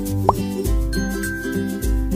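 Cheerful children's background music with a steady beat, and a quick rising 'bloop' sound effect about a quarter of a second in.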